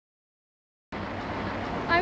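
Dead silence, then about a second in a steady outdoor street background cuts in abruptly: an even hum of traffic. A girl's voice starts just at the end.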